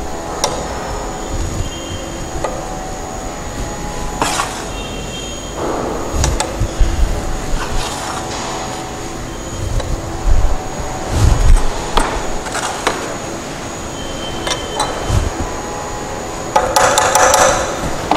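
Steel trowel scraping and knocking against a Vicat mould as cement paste is put into it: scattered short knocks and scrapes, with a few low thumps about ten to twelve seconds in, and a longer scrape near the end.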